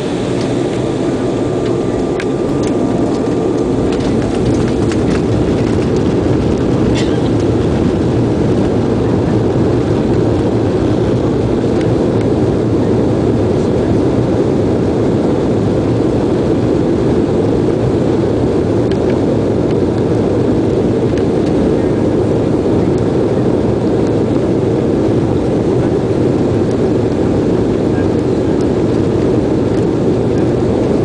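Cabin noise of an Embraer 190 on its takeoff roll: the twin turbofan engines at takeoff thrust with the rumble of the wheels on the runway, a steady roar that swells over the first few seconds and then holds. A few faint clicks and rattles early on.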